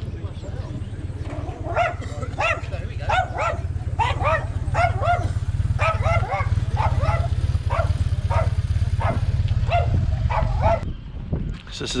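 Small dog barking repeatedly in short yaps, two or three a second, over a steady low rumble that stops near the end.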